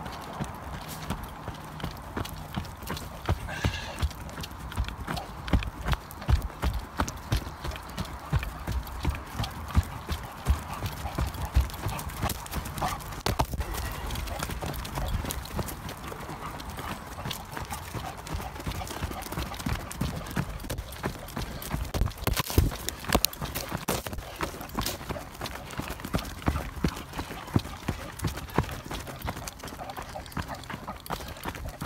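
Running footsteps thudding on a packed dirt trail in a rapid, uneven beat, with the handheld phone jostling.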